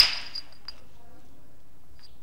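A single sharp knapping blow on a flint core at the very start, with a high ringing that fades over about half a second, then a faint click. It is the percussion blow that detaches a flake while the striking platform of a Levallois core is being prepared.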